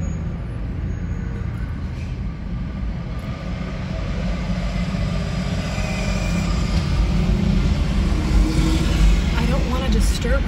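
Road traffic: a steady low rumble of vehicles, with a car passing close and growing louder through the second half.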